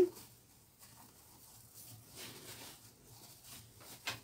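Faint rustling of a small sewn fabric pouch being turned right side out by hand, with soft handling sounds that swell a little about two seconds in and again near the end.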